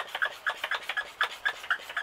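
Hand pump of a pump-up garden pressure sprayer being worked quickly, squeaking with every stroke at about four or five squeaks a second. It is being re-pumped to build pressure back up in the tank.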